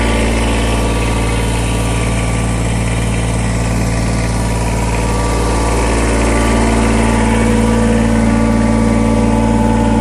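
Kubota BX2380's three-cylinder diesel engine idling steadily.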